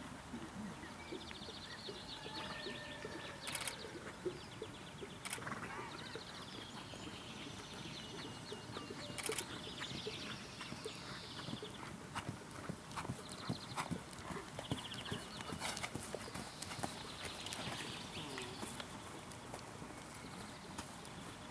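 A dressage horse's hoofbeats on a sand arena, with scattered sharp clicks, while something chirps high and fast at times in the background.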